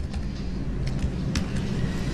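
Steady low background rumble with no speech, and a single faint click about a second and a half in.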